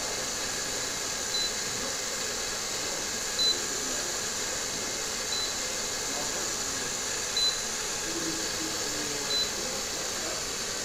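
Cordless drill running steadily as it turns a cardboard tube, with a short high beep about every two seconds.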